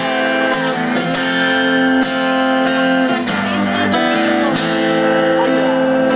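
Acoustic guitar strummed live, an instrumental passage of sustained chords with strong strokes about twice a second.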